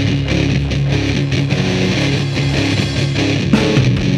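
Heavy stoner rock played without vocals: distorted electric guitar riffing over bass and drums.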